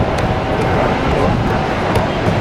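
Many people talking over the steady low rush of Niagara Falls.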